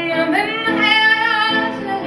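Female voice singing a wordless line that slides upward and is then held with a slight waver, over sustained piano chords, in a live jazz performance.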